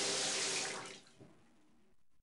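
Water running from a tap into a sink, fading away about a second in.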